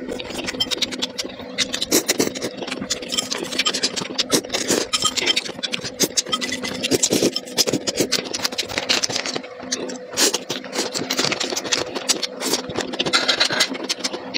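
Close-miked eating of thick chili-broth noodles: rapid, irregular wet chewing and mouth clicks, with a longer slurping burst near the end, over a steady low hum.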